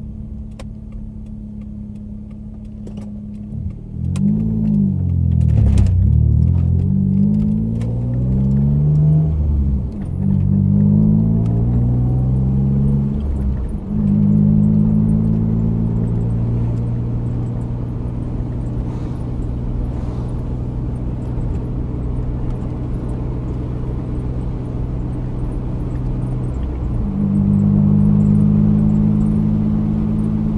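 Turbocharged Mazda MX-6 engine heard from inside the cabin. It starts at a steady run, then from about four seconds in it accelerates hard, its note climbing through two gears with short dips at the upshifts, then settles into a steady cruise that grows a little louder near the end.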